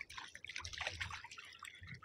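Faint dripping and trickling of water from a wet cast net being hauled by hand out of the water over the side of a small wooden boat, in scattered small drips.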